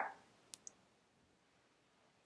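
Near silence: room tone with two faint, brief clicks about half a second in.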